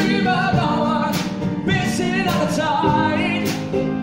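Live pop ballad performance: a male lead voice singing long, wavering notes over acoustic guitar and a drum kit, with the drums striking a steady beat about twice a second.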